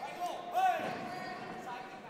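Raised voices in the fight crowd: a few short calls with rising and falling pitch, over a faint steady hum.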